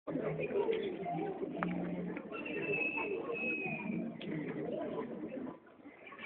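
A mix of voices and bird calls with cooing, with a thin high whistle held for about two seconds in the middle; the sound drops away about half a second before the end.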